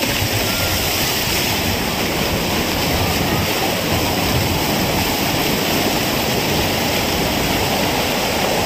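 Steady rushing noise of a heavy downpour and of floodwater churned up by a motorbike riding through a flooded road.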